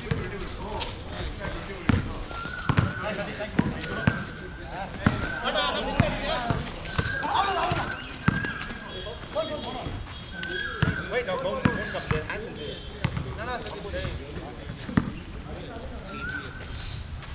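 A basketball bouncing on an outdoor concrete court, with sharp thuds at irregular intervals throughout. Players' voices call out indistinctly alongside.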